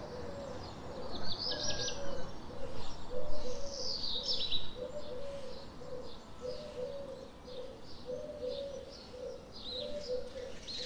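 Swallows twittering in short, high, rapid bursts, loudest about a second in and again about four seconds in. Under them, another bird gives a low call repeated roughly once a second.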